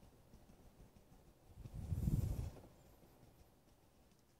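Faint scratching of a dry brush worked over a stretched canvas, laying on thin white paint, with one louder rustling scrub about halfway through.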